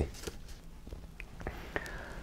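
Quiet room tone with a faint breath and a few small mouth clicks.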